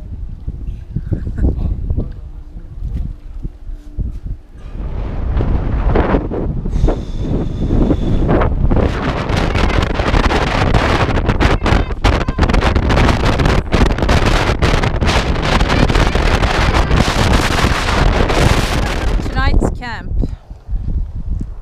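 Strong wind buffeting the microphone: a loud, steady rushing roar that sets in about four seconds in and holds to the end, after a quieter low rumble at the start.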